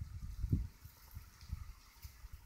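Faint, irregular low rumble of wind buffeting a phone's microphone outdoors, with a slightly stronger gust about half a second in.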